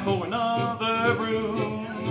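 Man singing a country song with several long held notes, accompanied by his own strummed acoustic guitar.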